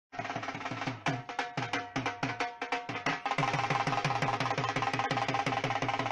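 Dhol drums beaten in a loose rhythm that settles into fast, even strokes about three seconds in, with a wind instrument holding steady notes over them.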